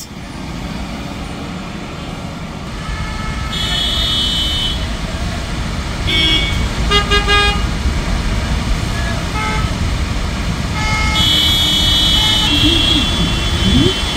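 Queued road traffic in a jam: a steady rumble of car and truck engines and tyres, with car horns honking around four seconds in, in a quick run of short toots around six to seven seconds, and in a longer blast around eleven to twelve seconds.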